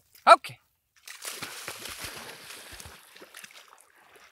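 A brief shout, then a dog splashing and sloshing through shallow pond water for about two seconds, starting about a second in.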